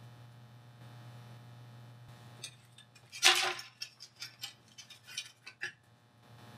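Light clicks and taps of a small plastic blower fan being handled and set down on a tabletop, with one louder brief scrape a little over three seconds in, over a faint steady low hum.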